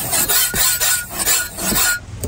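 A cleaver's steel edge stroked back and forth over a flat sharpening block: a quick run of short, hissing scrapes, a final fine-finishing pass on the edge.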